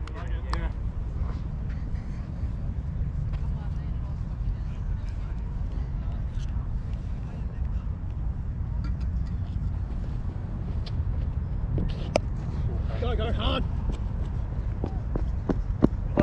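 Steady low rumble of wind on a chest-mounted action camera's microphone, with a few sharp clicks and a brief faint voice near the end.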